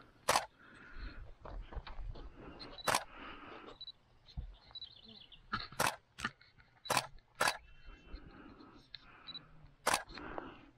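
A camera shutter clicking about seven times at uneven intervals, each a sharp, very short click, with two quick pairs near the middle.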